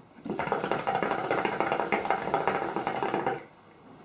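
Hookah bubbling during a long draw on the hose: a rapid gurgle of water in the base for about three seconds, stopping shortly before the end.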